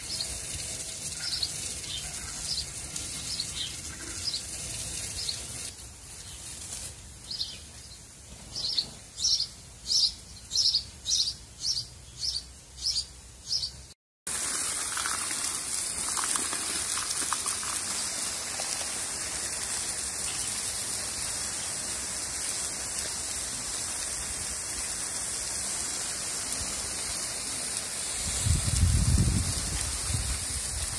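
Water from a garden hose hissing steadily as it sprays the garden and then runs onto the soil at the base of plants. A small bird chirps repeatedly over it, a quick run of loud, high chirps about twice a second in the middle, and a low rumble comes in near the end.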